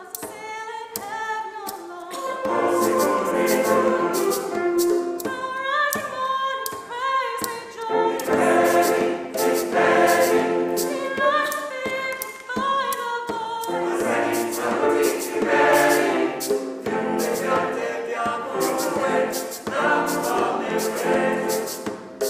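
Mixed church choir singing in parts, with a quick, steady tapping beat underneath.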